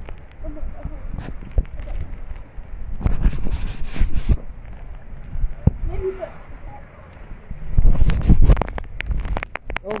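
Strong, gusty wind buffeting the microphone over the hiss of heavy rain, with two loud surges, about three seconds in and again near eight seconds.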